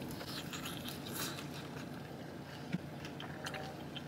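A person biting into and chewing a sauced chicken wing, quietly, with a few small crackles and clicks of the bite in the first second or so.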